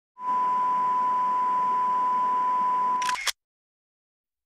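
Film-leader countdown sound effect: one long steady beep over an even hiss lasting about three seconds, cut off by a short noisy burst.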